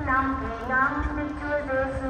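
Voices chanting a prayer in Vietnamese, with a few long held notes, over low thumps.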